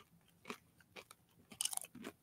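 Faint crunching of a person chewing crisp chips close to the microphone: a few soft crunches about every half second, with a short burst of crackly crunching near the end.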